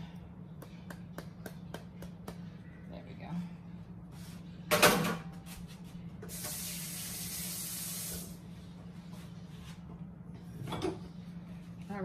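Off-screen kitchen noises: light clicks, a sharp knock about five seconds in, then a steady hiss for about two seconds that stops abruptly, and another knock near the end. A low steady hum runs underneath.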